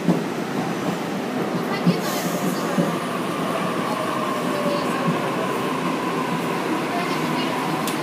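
Sydney Trains Waratah A-set double-deck electric train pulling into the platform: a steady rolling rumble with a few sharp wheel clicks early on, and a high whine that comes in about two seconds in and slowly falls in pitch as the train slows.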